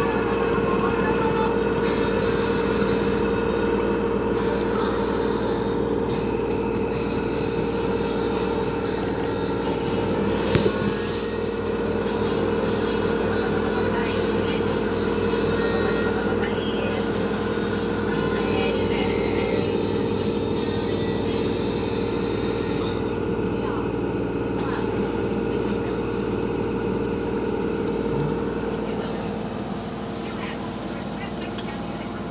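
LG direct-drive washing machine on its spin cycle: a steady motor whine over the rush of the spinning drum, with one brief knock about ten seconds in. The level eases off near the end as the spin starts to slow.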